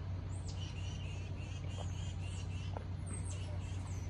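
Small birds chirping: a run of short repeated notes, about four a second, and a couple of high down-slurred whistles near the start and near the end. A steady low hum sits underneath.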